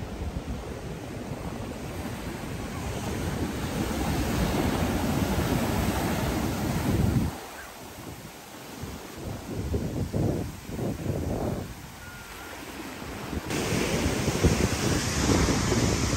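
Ocean surf breaking and washing up the sand, with wind buffeting the microphone in uneven gusts.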